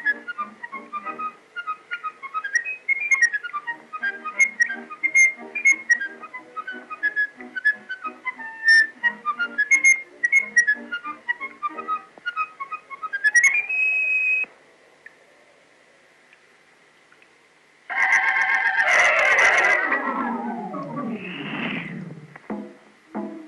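Early sound-cartoon soundtrack: a lively whistled tune over a soft accompaniment, climbing near the middle to a held high note. After a few quiet seconds, a loud sliding sound of several tones falls steeply in pitch over about four seconds.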